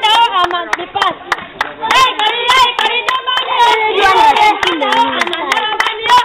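Hands clapping many times in quick succession, with several voices singing and calling over the claps.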